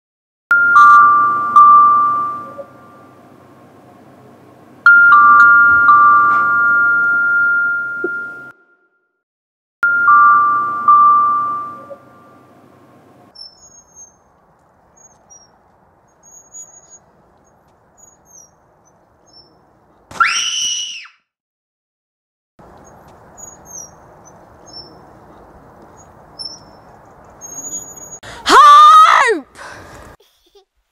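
Three ringing chime notes, each about three seconds long and about five seconds apart, then faint bird chirps. A brief rising whistle-like sound comes about twenty seconds in, and a loud, high, wavering sound comes near the end.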